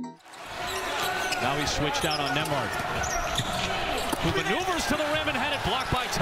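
A basketball bouncing on a hardwood court amid the sounds of a live game, with players' indistinct voices calling out over it.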